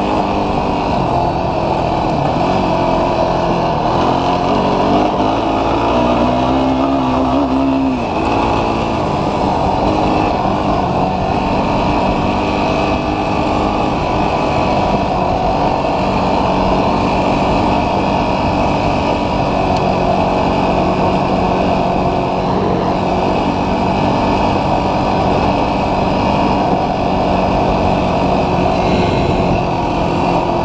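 Yamaha YFZ450R's single-cylinder four-stroke engine running under way on a test ride, its throttle position sensor just adjusted to cure a low-throttle bog. The engine climbs in pitch for a few seconds, drops sharply about eight seconds in, then holds a steady note, with wind and gravel noise throughout.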